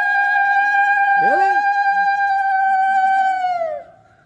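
A woman's hulahuli, the Odia welcoming call: one long, high call held on a steady pitch that trails off just before the end. Another voice gives a short exclamation about a second in.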